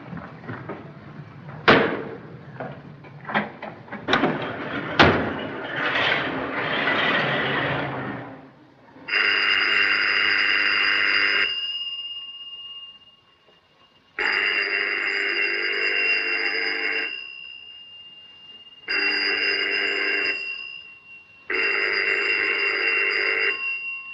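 Old desk telephone bell ringing: four long rings with pauses between them, starting about nine seconds in. Before the ringing, two sharp bangs and the noise of a car moving off.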